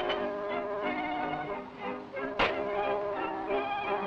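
Early sound-cartoon soundtrack: buzzy, wavering pitched tones like reedy instruments playing with a quick vibrato, with one sharp knock about two and a half seconds in.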